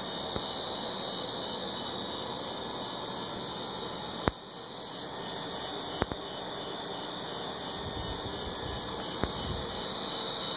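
Steady background hiss with a constant high-pitched whine running through it, and a couple of sharp clicks about four and six seconds in as the camera is handled.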